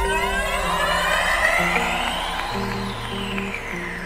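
Electronic music: stepping synth bass notes under a dense wash of gliding synth tones that sweep up to a peak about two-thirds of the way through and then fall back.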